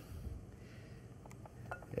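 A few faint, light clinks of a metal spoon while rice is spooned into a plastic arancini mould.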